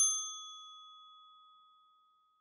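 A single bright, bell-like ding, struck once right at the start and ringing out in a slow fade over about two seconds: a logo sting sound effect.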